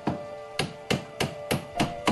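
A hammer nailing wooden coffin boards: about six sharp blows at a steady pace of roughly three a second.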